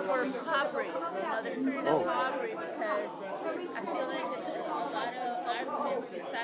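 Indistinct voices of several people talking quietly at once in a large room.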